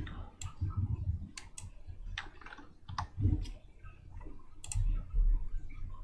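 Irregular clicking from a computer input device while on-screen scratch work is being erased: a dozen or so sharp clicks spread unevenly, with a few soft low thumps about three and five seconds in.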